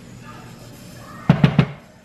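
A quick run of three or four sharp knocks about a second and a half in, over an otherwise quiet stretch.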